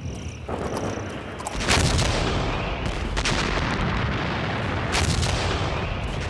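Battle sounds of gunfire and artillery fire: a continuous rumble with a loud blast about a second and a half in and sharp reports around three and five seconds.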